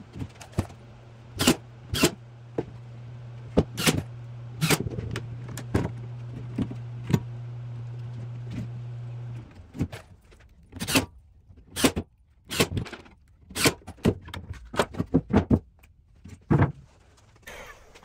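Hand work on a wooden face frame: a string of sharp clicks and knocks as a bar clamp is set and the wooden pieces and loose screws are handled. A steady low hum runs underneath and cuts off about nine seconds in.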